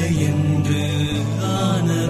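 Slow music of long held notes over a steady low bass, the notes changing every half second or so.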